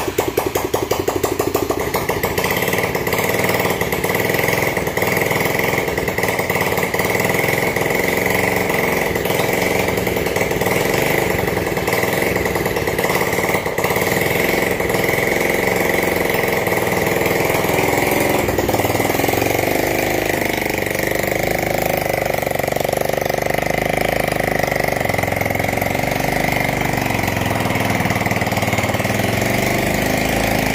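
Small engine of a homemade 4x4 mini rock crawler running steadily right after being started, with its drivetrain turning the wheels while the machine is raised on supports. Its pitch dips and then rises again about twenty seconds in.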